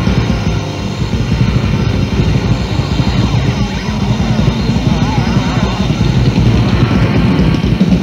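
Death/doom metal from a 1987 cassette demo: distorted electric guitar and drums playing loud and without a break.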